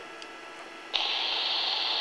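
Analog FM ham radio transceiver receiving the other station's keyed transmitter with no voice on it: about a second in a steady hiss cuts in suddenly, a raining-like background noise that comes with the weak analog signal.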